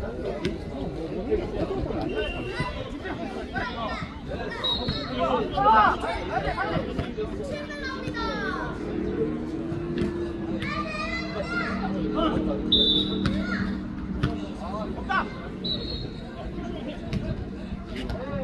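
Players shouting short calls to one another during a jokgu rally, with a few sharp thuds of the ball being kicked.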